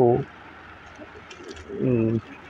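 A man's voice trails off at the end of a word, then there is a pause of about a second and a half with only faint room tone. Near the end comes a short, steady hum in the same voice.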